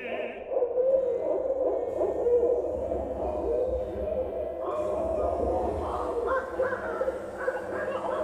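Barred owl calls played back through loudspeakers: continuous wavering hooting, with a brighter, higher layer joining about five seconds in.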